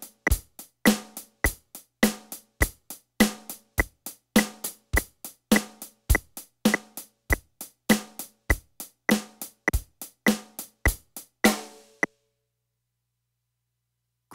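Yamaha DTX400K electronic drum kit playing a steady beat of kick, snare and hi-hat along with the module's metronome click during its Groove Check timing exercise. The playing stops about twelve seconds in.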